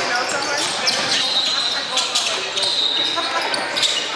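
Basketball dribbled on a hardwood gym floor, several bounces, under the chatter of voices and with the echo of a large gym.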